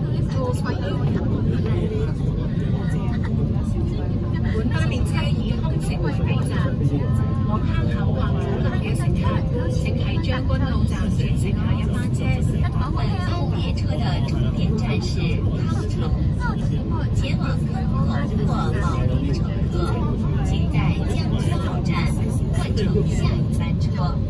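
MTR K-train car running at speed, with a steady, loud low rumble of wheels and traction gear in the passenger saloon and passengers talking over it.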